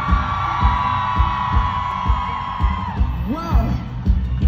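Live pop band playing, with a steady drum beat under one long high held note that ends about three seconds in, then a short sung phrase.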